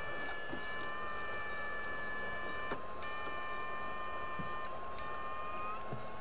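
Steady high-pitched whine from an electrofishing unit (a PDC 8 FET shocker): several tones held together, breaking off and shifting a little in pitch a few times, with faint short chirps above them.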